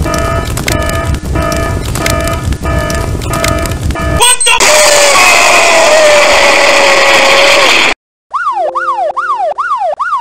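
Sound effects: a repeating electronic fire alarm, then about four seconds in a loud explosion whose roar holds for a few seconds and cuts off suddenly. After a moment's silence, a siren wails up and down.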